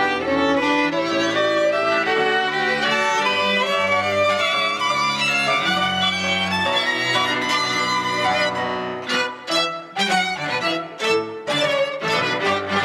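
Piano quintet of two violins, viola, cello and grand piano playing together, the strings in sustained bowed lines over piano. About nine seconds in the music breaks into short, accented chords with brief gaps between them.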